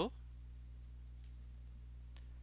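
A few faint clicks of a stylus tapping on a pen tablet, over a steady low hum.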